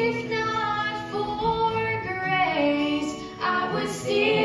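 Several women singing a gospel song together in harmony, with acoustic guitar accompaniment.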